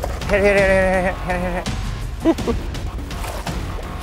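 A man laughing excitedly: one long wavering laugh and a shorter one in the first second and a half, then a brief short vocal sound about two seconds in.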